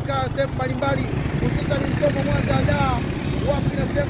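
A man talking over a steady low rumble of a vehicle engine.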